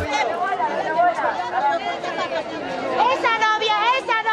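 A group of women's voices chattering and calling out together, with loud, drawn-out calls from one or more voices about three seconds in.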